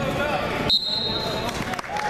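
Spectators' shouting, cut through about two-thirds of a second in by a wrestling referee's whistle: one steady high note lasting under a second, the signal that the match has ended in a fall. Voices pick up again near the end.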